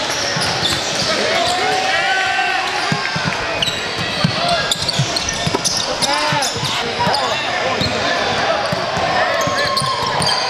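Basketball game heard courtside in a large gym: a ball dribbling on the hardwood floor, sneakers squeaking in short sliding squeals, and a crowd of voices talking and calling around the court.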